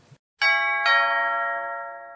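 A two-note ding-dong chime: a higher bell-like strike and then a lower one about half a second later, both ringing on and fading away over about two seconds.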